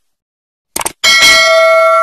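Subscribe-button animation sound effects: a short click just before a second in, then a bell notification ding that rings on with several steady tones.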